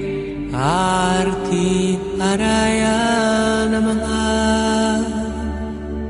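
Sung Sanskrit mantra chant with musical backing: a voice glides up about half a second in, then holds long notes, and a steady low drone comes in a little over two seconds in.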